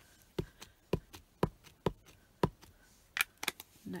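Clear acrylic stamp blocks and photopolymer stamps being handled and set down on the craft desk: about five separate knocks in the first two and a half seconds, then a few sharper clicks a little after three seconds.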